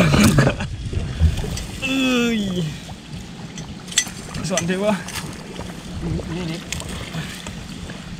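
Water sloshing and water hyacinth leaves rustling as a man wades and reaches down among the pond plants. A short exclamation comes about two seconds in, and a sharp click near four seconds.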